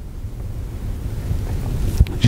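Steady low rumbling noise on the microphone, like wind or air blowing across it.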